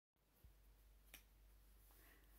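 Near silence: faint room tone with two faint clicks, the second about a second in.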